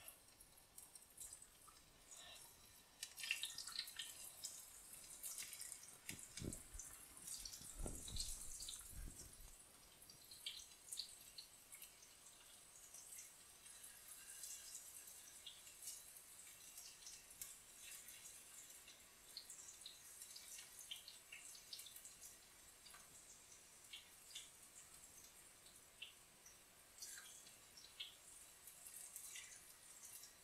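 Eggplant slices frying in hot oil in a frying pan: a faint, fine sizzle and crackle that grows busier about three seconds in as fresh slices go in, then settles to a lighter sizzle. A couple of low thumps come around the middle.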